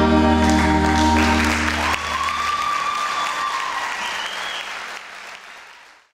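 The live band's final chord rings out, its bass note held for a couple of seconds before dying away, while audience applause swells from about a second in. A held high tone sounds over the clapping in the middle, and everything fades out near the end.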